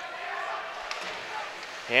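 Ice hockey game in play in an indoor arena: a steady haze of rink noise, with one sharp click about a second in, like a stick or puck knock.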